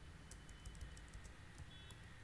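Faint typing on a computer keyboard: a run of quick, irregular keystroke clicks.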